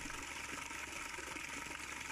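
Steady splashing of a stream of water falling into a plastic tub of water, with a low steady hum underneath.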